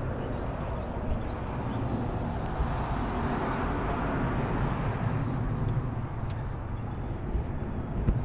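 Steady road traffic noise: a low, even rumble with no single event standing out.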